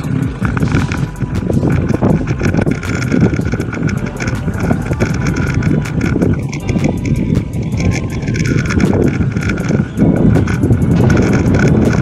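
Mountain bike rolling over a rough dirt road, heard from a camera on the bike: a steady rumble of tyres and wind with rapid rattling knocks from the bike, about six a second.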